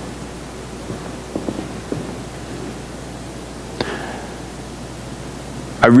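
Steady hiss with a low hum from the sound system and microphone during a pause in speech. A few faint soft taps come between about one and two seconds in, and a brief click about four seconds in.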